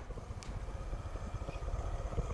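Faint, low rumbling background noise with no clear pitch.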